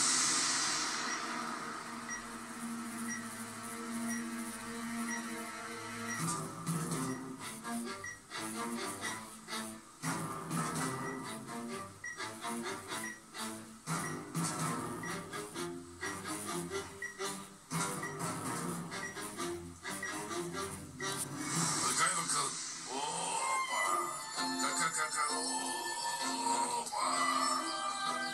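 Background music from a TV drama's soundtrack, heard through a television's speaker in a small room. Sustained notes open it, and percussion comes in about six seconds in.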